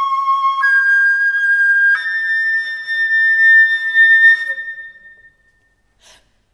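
Solo concert flute holding long notes that step up in pitch twice; the last and highest note is held for about three seconds with a fainter lower tone sounding beneath it, then dies away into a short pause near the end.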